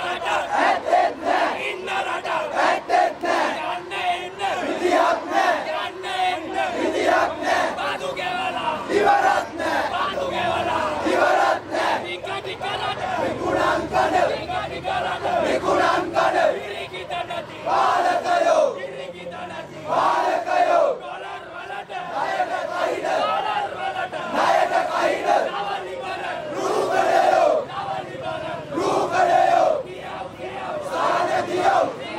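A crowd of male student protesters shouting slogans together, many voices loud and continuous, with rhythmic peaks every second or two.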